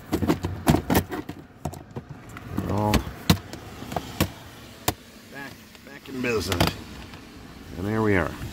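Plastic clicks and knocks as a car's fuse box trim cover is pushed into place and snapped shut. There is a quick cluster of clicks in the first second, then single clicks about three, five and six and a half seconds in.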